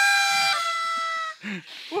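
Two party blowers sounding together, each a steady buzzy held note, one slightly lower than the other, both cutting off about a second and a half in.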